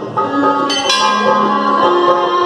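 A metal bell struck twice in quick succession, a little under a second in, its tone ringing on over devotional music.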